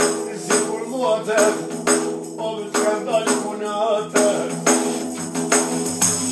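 Albanian folk song: a voice sings wavering, ornamented lines over a steady instrumental drone, with a jingling frame drum beating about twice a second.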